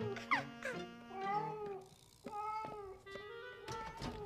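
A house cat meowing behind a door, with a sharp falling cry near the start, over light background music.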